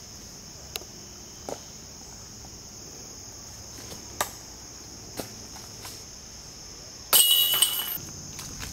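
Insects singing in a steady high drone in summer woodland, with a few scattered soft footsteps or ticks. Near the end a loud, noisy burst about a second long cuts in.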